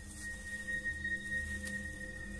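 A steady high-pitched tone held for about two seconds over a fainter lower tone and a low rumble: a sustained note of background music.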